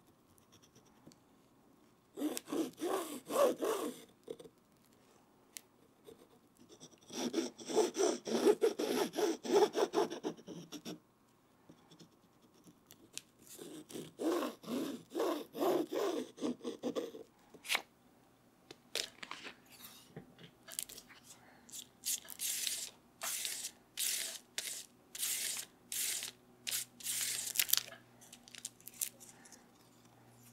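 Paper being rubbed down along a book spine in three bouts of rapid back-and-forth rubbing, the spine lining being smoothed onto the text block. After that comes a run of short, crisp scratching and tapping strokes from paper and board being handled to assemble the hardcover case.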